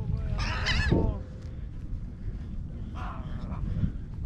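Gulls calling: a loud wavering squawk about half a second in and a fainter call about three seconds in, over a low rumble of wind on the microphone.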